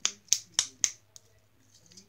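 White slime being pulled and stretched out of a small plastic cup, making four quick sticky clicks and pops in about the first second, then a single faint one.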